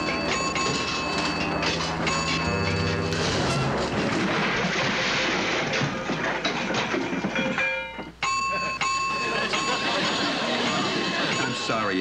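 Sound effects of a sabotaged homemade robot starting up and going wrong: steady electronic tones and a rising whine of stepped pitches, then several seconds of harsh rattling noise that stops abruptly before the tones come back. The robot blows itself up.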